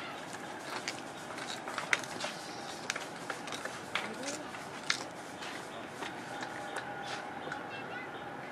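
Faint voices of people nearby over a steady outdoor background hum, with scattered sharp clicks.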